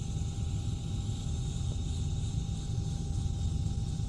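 Steady low rumble of a small helicopter's engine and rotor, heard from inside the cabin in flight, with a faint steady whine above it.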